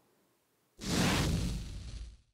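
After a brief silence, a whoosh sound effect for an animated logo transition swells up about a second in and fades away.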